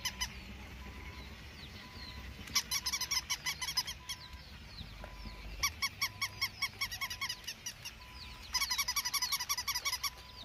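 Waterfowl calling: quick runs of short, pitched honks, about five or six a second, in three bursts with short pauses between, the last near the end the loudest.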